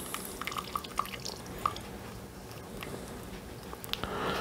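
Water dripping from a handful of soaked vermiculite into a bucket of water, a few separate drips mostly in the first two seconds. The vermiculite is draining off water that it has not absorbed.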